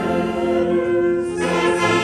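Military wind band of saxophones, clarinets and brass playing a slow piece: a long held chord, with the band growing fuller and brighter about one and a half seconds in.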